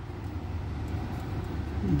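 A steady low rumble of background machinery, with no sudden sounds.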